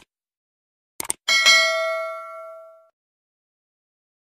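Subscribe-button sound effect: a short click about a second in, then a bell ding that rings out and fades over about a second and a half.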